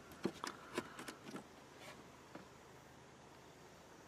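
A few faint, sharp clicks of handling in the first second and a half, then near silence with faint background hiss.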